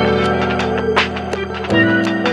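Outro music with a steady beat: sustained bass notes and chords under drum hits about twice a second.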